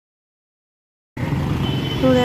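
Dead silence for about a second, then busy city street traffic noise cuts in abruptly: a steady rumble of engines and tyres, with a thin high steady tone joining it shortly after.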